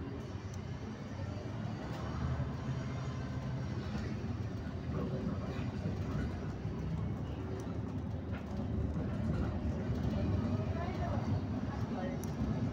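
Steady rumble of a moving car's engine and tyres on the road, growing slightly louder, with faint voices mixed in.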